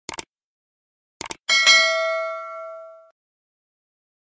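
Subscribe-button animation sound effect: a few quick clicks at the start and two more a little over a second in, then a notification-bell ding that rings out and fades over about a second and a half.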